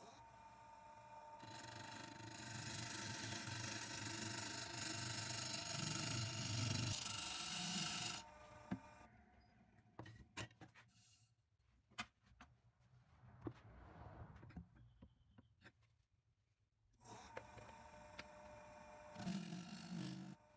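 Turning tool cutting a spinning padauk blank on a wood lathe: a steady rasping scrape over the lathe's running hum from about a second and a half in until about eight seconds in. After that only scattered faint ticks, and the cutting comes back briefly near the end.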